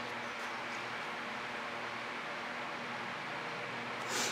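Steady background hiss with a faint low hum and no distinct sound events.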